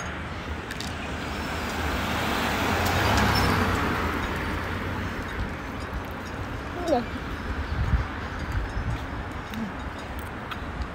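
Street traffic: a car's road noise swells to a peak about three seconds in as it drives past, then fades.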